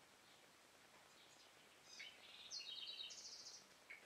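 Faint room tone, then about two seconds in a small bird sings a short phrase of high chirps and quick trills that step between pitches for nearly two seconds.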